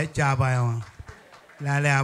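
A man's voice in two drawn-out phrases with long held vowels: the first falls in pitch and stops about a second in, the second starts near the end.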